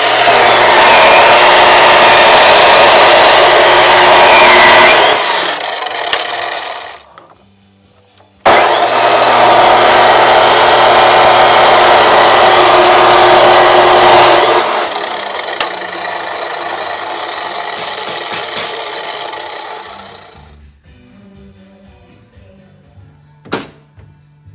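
Abrasive chop saw cutting rubber radiator hose, two cuts of about five to six seconds each, the motor winding down slowly after each cut. A few light clicks near the end.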